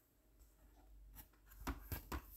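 Faint rustle of a picture book's paper page being turned. A soft tap comes about a second in, then a short rustle with two light knocks near the end.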